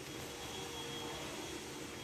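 Steady faint background hiss with a thin high tone and a faint lower hum running through it: room tone with no distinct sound event.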